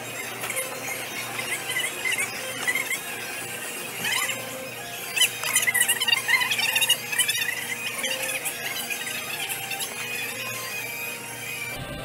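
Electric go-kart tyres squealing in short, wavering bursts as karts slide through corners on a smooth indoor concrete track, the squealing thickest in the middle of the stretch, over a steady hum.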